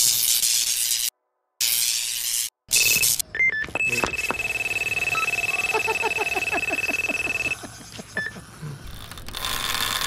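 Electronic carp bite alarm sounding one steady high tone for about three and a half seconds after a few short beeps, the signal of a run, with fast clicking beneath it. Bursts of hiss-like noise with short dead gaps come before it, and a single beep follows.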